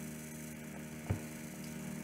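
Steady low electrical hum, with one brief click about a second in.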